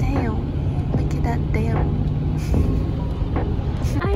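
Steady low road and engine rumble heard from inside a moving car's cabin, with a few brief snatches of voice over it.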